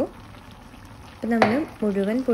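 Faint, even sizzle of lime-pickle masala frying in oil in a pan, then a woman starts speaking about a second in.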